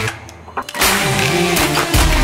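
Electronic background music with a heavy beat that cuts out just after the start and comes back in less than a second later.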